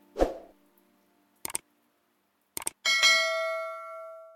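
Subscribe-button animation sound effects. A sudden swoosh comes first, then two short mouse clicks about a second apart, then a bright bell chime that rings on and fades.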